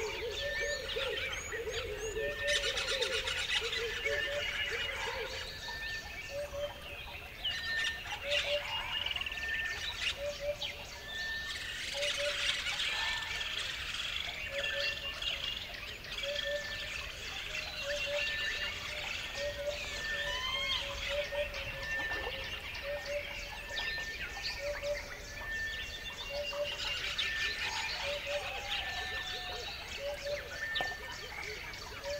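Many birds chirping and calling together. Through it runs one short low call, repeated evenly about once a second.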